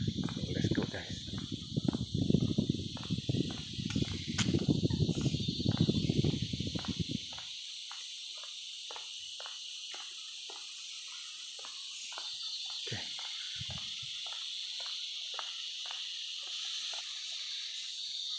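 A steady, high-pitched chorus of forest insects. During the first seven seconds or so a louder low rumble with irregular knocks lies over it, then it cuts out and only the insect chorus remains.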